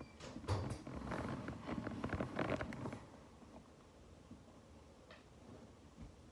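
Light handling noise: a run of soft clicks and rustles from toys being moved on the floor for about three seconds, then quiet with one faint click near the end.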